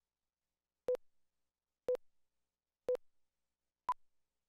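Electronic countdown beeps for a broadcast segment slate: three short beeps a second apart, then a fourth at a higher pitch.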